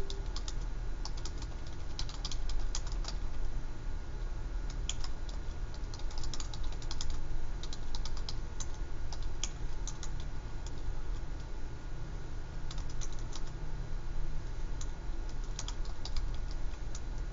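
Irregular clusters of light clicks and taps, several at a time with short gaps between clusters, over a steady low room hum.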